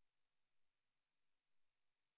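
Near silence: the feed carries no sound, only a faint, steady noise floor.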